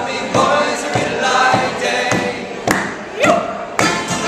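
Live Irish folk-rock: two acoustic guitars and a mandolin strummed under several voices singing together, with one voice sliding upward about three seconds in. Hard strums come back in just before the end.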